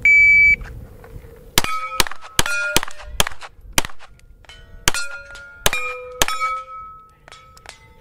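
Electronic shot timer's start beep, then about ten shots from a Steyr L9A1 9mm pistol over roughly five seconds, with steel target plates ringing after the hits. Some shots miss: the shooter says he is going right over the top of the plates, not holding the front sight on the target.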